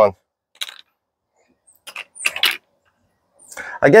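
Small hard plastic hive corner pieces clicking and clattering as they are picked up and handled on a tabletop: one light click about half a second in, then a short cluster of clicks and rattles around two seconds in.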